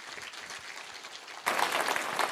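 Faint room noise, then a large audience suddenly starting to applaud about one and a half seconds in.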